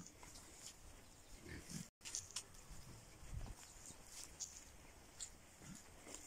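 Free-range pigs grunting faintly, a few short low grunts.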